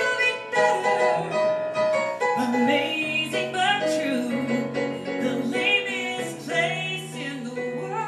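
A female vocalist sings a musical-theatre song live with piano accompaniment, holding notes with vibrato.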